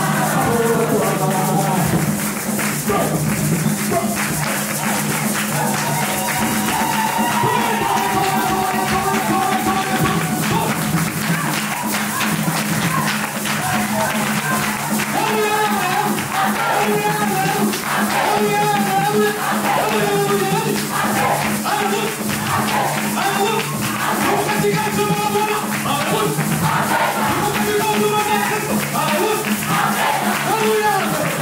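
A congregation singing a lively song together, with hand drums and other percussion keeping a steady, driving beat.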